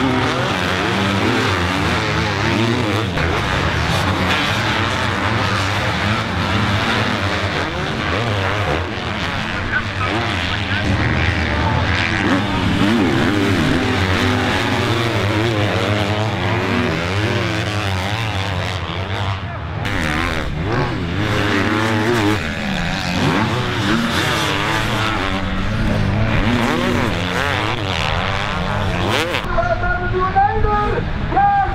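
Several MX2 motocross bikes racing on a sand track, their engines revving up and down as the riders climb and jump the hills, overlapping without a break.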